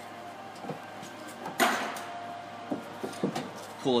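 A short scrape about a second and a half in, then a few light clicks, as gloved hands handle an ignition coil and its plastic connector on the engine.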